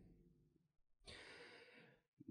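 Near silence, with a faint breath drawn into a handheld microphone about a second in, lasting under a second.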